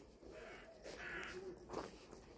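Two faint bird calls in quick succession, a bit over half a second apart.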